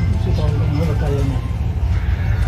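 A steady low rumble, with a faint voice speaking in the background about half a second in.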